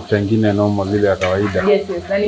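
A person's voice humming and murmuring, over a faint sizzle of food frying as it is stirred in a pot on the stove.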